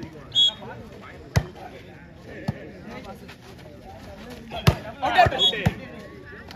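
A short referee's whistle blast, then the volleyball served with a sharp smack about a second later. Near the end come three quick hits of the ball in play, amid shouting from players and spectators.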